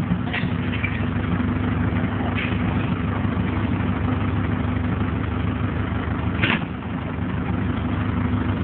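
A vehicle engine running steadily at low revs, with one short sharp noise about six and a half seconds in.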